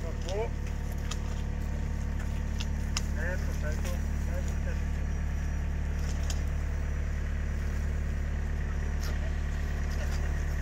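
An engine running steadily at idle, with a constant low hum that does not change in pitch, and faint voices in the background.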